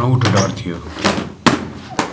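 A voice speaking, then a single sharp bang about one and a half seconds in as a metal trunk is shut.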